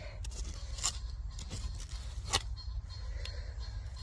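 Digging by hand in soil among tree roots: soft scraping with a few sharp clicks as the tool strikes or snips through roots, the loudest click a little past halfway, over a steady low rumble.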